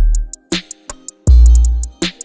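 Instrumental hip-hop beat at 147 BPM played by a drum machine. A deep bass note fades out, a snare hits about half a second in, hi-hats tick throughout, and a new bass note comes in past the middle.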